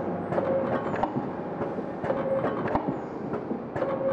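Vertical powder sachet packing machine running through its cycle: a short motor tone with a burst of clicks and clacks from the sealing and cutting mechanism, repeating about every 1.7 seconds.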